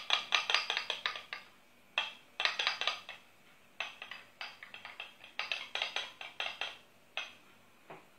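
A spoon clinking rapidly against a small bowl as egg white and lemon juice are beaten together, in quick runs of strokes broken by short pauses.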